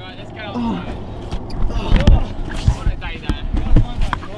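People yelling during a ride down a wet inflatable slide, with several heavy thumps and knocking against the camera in the second half.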